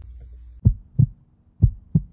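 Heartbeat sound effect: two lub-dub double beats, low thumps about a second apart.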